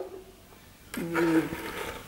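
A man's voice holding a drawn-out hesitation sound, 'eh', in mid-sentence, beginning about a second in after a short pause that opens with a light tick.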